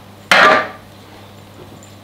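A single loud clank of metal cookware being set down, most likely the hot roasting tray put back on the hob or counter, with a short metallic ring that dies away within half a second.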